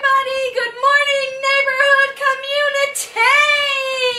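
A woman singing in a high voice, holding each syllable at a steady pitch, with one long held note near the end.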